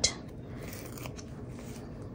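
Faint clicks and paper rustle of metal tweezers handling a paper sticker and laying it on a planner page, a few light ticks over a low steady hum.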